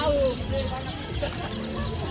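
A chicken clucking, with a short rising-and-falling call at the start and scattered clucks after, over a busy background of people.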